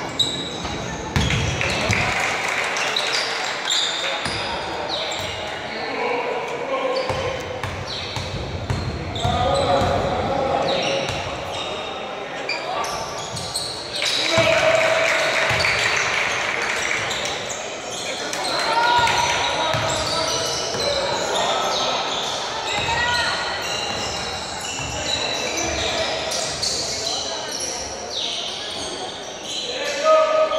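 Basketball game in a large indoor gym: the ball bounces on the court and players' voices call and shout, echoing in the hall.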